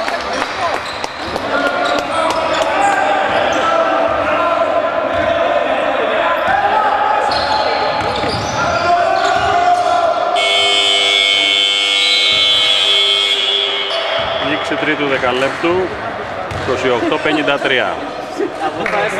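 Gym scoreboard buzzer sounding one steady blast of about three and a half seconds, starting about ten seconds in, ending the period. Before and after it, a basketball is dribbled on a wooden court amid players' voices in a large hall.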